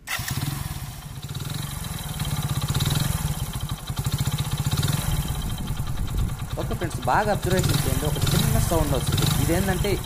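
Hero Splendor Plus 100cc single-cylinder four-stroke motorcycle engine catching right at the start and then idling with an even chug. It is being run to show the crank noise it has developed at 18,000 km.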